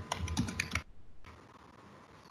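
Typing on a computer keyboard: a quick run of key clicks that stops just under a second in.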